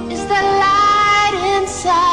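A woman sings a soft pop song, holding long notes that slide and dip in pitch over a gentle backing track.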